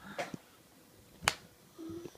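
A single sharp hand slap a little over a second in: a high five with a small child.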